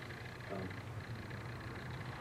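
Quiet room tone with a steady low hum, and a brief murmured "um" about half a second in.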